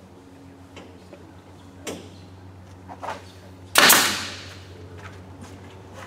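Pneumatic pin nailer fastening MDF panels: a few light clicks, then about four seconds in one loud sharp shot with a rush of air that dies away over about a second.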